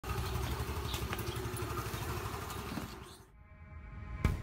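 Motor scooter engine running at idle with a steady low pulse, fading away about three seconds in.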